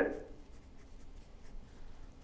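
Faint scratching and rustling at a desk, as of writing on paper, over low studio room tone.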